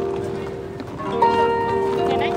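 Harp being plucked: notes from the previous chord ring on and fade, then a fresh chord is plucked about a second in and its notes sustain.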